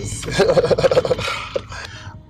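Men laughing: a burst of quick, pulsing laughter in the first second that trails off.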